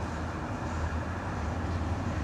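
Steady low outdoor rumble with no distinct events, like distant traffic or wind on the microphone.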